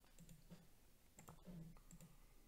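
Near silence with a few faint clicks and soft low knocks.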